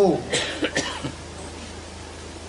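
A man coughing about three times in quick succession, just after a spoken phrase ends, over a steady low hum.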